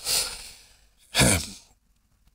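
A man sighs: a long breathy exhale that fades out, followed about a second later by a short voiced hum.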